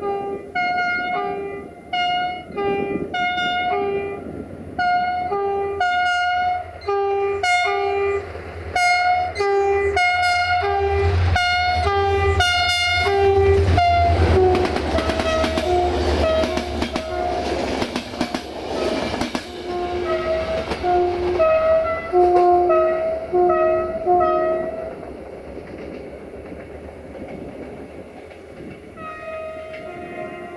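Air horn of CFR GM diesel locomotive 64-1125-5 blown as a rapid, rhythmic string of short toots, switching between a low and a high note like a played tune. About halfway through the train passes close with a loud rumble and wheel clatter, then more short toots follow at a slightly lower pitch as it moves away.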